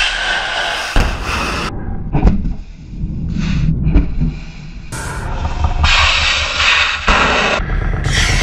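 Rocket motors of missiles launching from a warship's vertical launch cells, a loud rushing roar in several short clips cut together, the sound changing abruptly at each cut.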